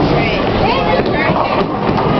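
Indistinct overlapping voices and chatter in a busy bowling alley, over a steady dense background din.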